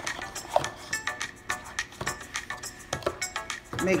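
Plastic ribbon spools clicking and knocking as they are handled and set down on a table, many small sharp taps, over quiet background music.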